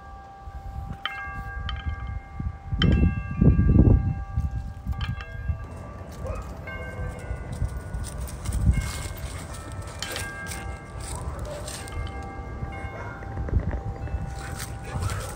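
Wind chimes ringing irregularly: several tones struck at different moments that overlap and ring on. Wind rumbles on the microphone, loudest about three to four seconds in.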